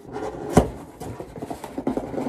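A cardboard box being opened and its packaging handled close to the microphone: scratchy rubbing and rustling, with a sharp knock about half a second in and smaller clicks after it.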